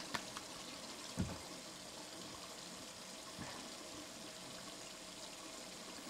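Steady rush of running water, with a few light clicks near the start and a dull thump about a second in.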